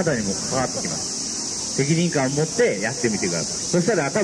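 A steady, even, high-pitched insect drone, typical of summer cicadas, with a man's voice talking in short stretches over it.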